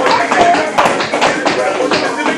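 Several children's tap shoes clicking irregularly on the studio floor, a jumble of many quick, uneven taps.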